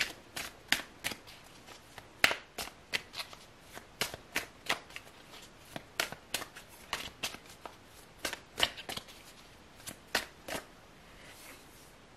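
A deck of tarot cards being shuffled by hand: a run of sharp, irregular clicks and slaps, about two or three a second, that stops a little before the end.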